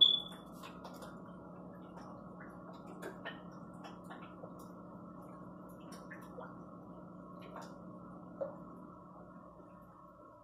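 Steady low hum of aquarium equipment with faint scattered ticks. A single sharp clink with a brief high ring comes right at the start.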